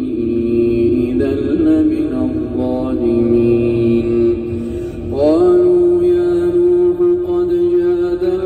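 A male Quran reciter chanting in a slow, melismatic style, drawing out long vowels with small ornaments. About five seconds in, his voice glides up to a higher note and holds it.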